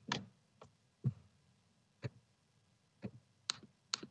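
Scattered sharp clicks and ticks on a video-call audio feed, about one a second at first and closer together near the end, over a faint low hum.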